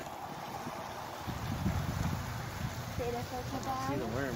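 Wind buffeting the phone's microphone: an uneven low rumble that starts about a second in and grows, with a faint voice near the end.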